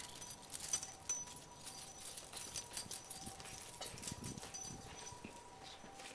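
Footsteps on asphalt with irregular light clicks and jingling as a person walks a miniature schnauzer on a leash.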